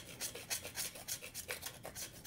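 A block of chocolate being scraped with a small hand tool to shave it onto a cocktail, in quick rasping strokes about five a second.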